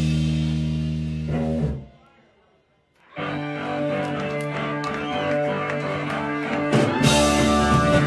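Live rock trio of electric organ, bass and drums: a held chord stops abruptly about one and a half seconds in, followed by a brief near-silent gap. Organ and bass then start a new passage, and the drums and cymbals come in near the end, making it fuller and louder.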